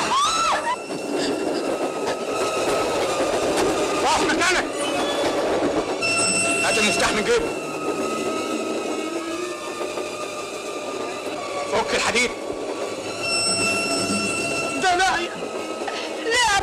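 Passenger train running, a steady rattling rumble throughout, with a high steady squeal coming in twice, about six seconds in and again near the end. Brief shouts and cries from passengers break over it a few times.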